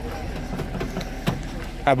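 Boot latch of a Daewoo Nexia sedan releasing with one sharp click about a second in, as the boot is opened, over the steady background chatter of many people outdoors.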